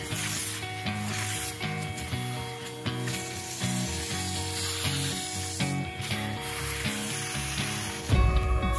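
Shop vacuum running with a steady airy hiss as its crevice nozzle sucks along the vinyl floor and seams of an inflatable bounce house, under background music.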